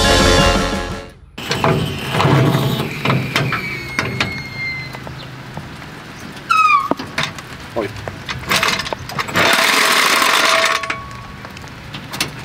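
Rock music that cuts off abruptly about a second in, then workshop sounds from work on a car's front suspension: scattered clicks and knocks, a short falling squeal around the middle, and a high hiss lasting about a second near the end.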